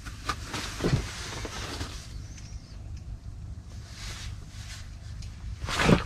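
Low steady hum with faint rustling and small knocks, then a loud scuffing rustle of clothing and gear just before the end.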